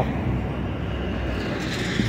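Steady low rumble of street traffic on the road beside the sidewalk.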